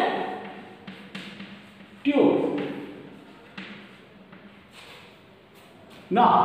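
Chalk writing on a chalkboard: a scattering of light, sharp taps as the chalk strikes the board. About two seconds in, a single short spoken syllable rings briefly in the room.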